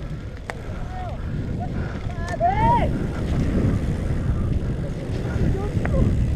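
Wind rushing over a helmet-mounted action camera and a low rumble of mountain-bike tyres rolling fast over a dirt trail, growing louder as the bike picks up speed. A few sharp clicks from the bike over bumps.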